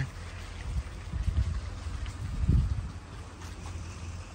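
Wind buffeting the microphone outdoors: an uneven low rumble with two stronger gusts, about a second in and again past the middle.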